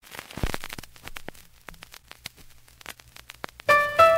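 Surface noise of a vinyl 45 rpm single as the stylus rides the lead-in groove: irregular clicks, pops and crackle over a faint low hum. The record's music begins just before the end.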